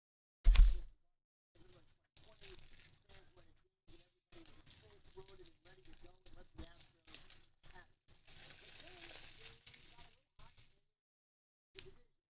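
A single loud thump about half a second in, then soft, intermittent crinkling and tearing of foil trading-card pack wrappers as packs are opened and handled.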